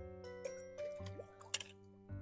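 Background music with a light melody, and about one and a half seconds in a short, sharp splash as a fish is let go from fish-grip tongs into a bucket of water.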